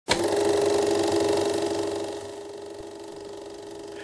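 Logo intro sound: an electronic drone with a fast buzzing texture that starts abruptly, fades down after about two seconds and carries on quietly.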